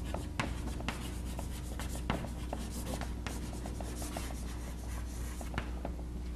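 Chalk writing on a blackboard: scratchy strokes with many short sharp taps as the chalk strikes the board. A steady low hum runs underneath.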